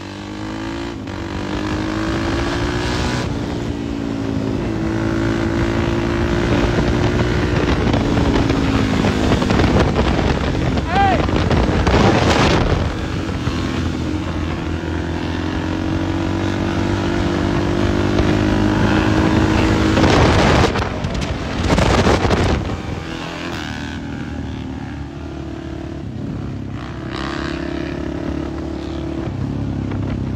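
Dirt bike engines running, their pitch rising and falling with the throttle, with loud rushes of noise about twelve seconds in and again around twenty to twenty-two seconds.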